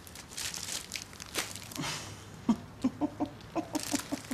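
Cellophane-wrapped magazines rustling faintly as they are handled, then a woman's short, staccato chuckle: a quick run of clipped laughing pulses in the second half.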